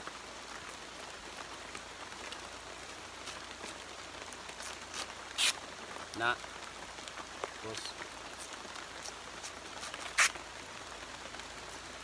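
A knife blade scraping and tearing into the fibrous leaf sheath of an abaca stalk, with two short, sharp rasps about five seconds apart, over a steady background hiss. This is the blade lifting the outer strips that are pulled off for abaca fibre.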